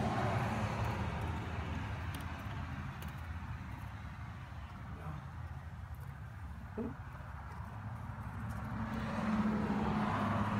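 A steady low engine hum that grows louder near the end, with one brief knock about seven seconds in.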